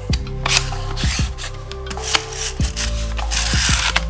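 Clicks and rubbing of plastic and metal as the magazine of a Ryobi 18V AirStrike brad nailer is handled, with several sharp clicks and a longer scraping rub near the end, over background music.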